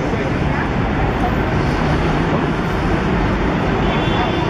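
Steady road traffic noise of a busy city street, with the voices of passers-by mixed in.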